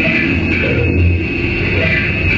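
Loud, dense live electronic noise music played from a table of effects pedals through guitar amplifiers: a continuous wash of distorted sound over a strong low hum, with a bright hiss on top.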